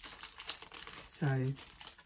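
Packaging crinkling in irregular crackles as it is handled, with one short spoken word about a second in.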